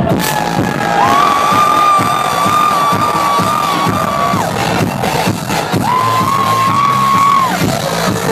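Loud house music from a club sound system as the track drops, with a crowd cheering and whooping. A sharp hit opens it, followed by two long held high notes.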